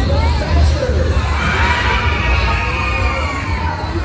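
Riders on a spinning fairground ride screaming together, a massed shriek that swells about a second in and fades near the end, over loud bass-heavy ride music.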